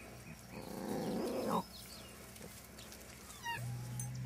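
A dachshund puppy makes a short, rough growling sound about a second long, rising in pitch at its end, as it plays with its toy.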